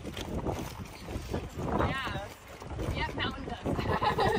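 Wind rumbling on the microphone, with brief snatches of people's voices about two and three seconds in.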